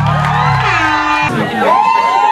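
A rap backing track played loud through a concert PA, with a deep bass line that drops out about two-thirds of the way through, and a crowd cheering over it.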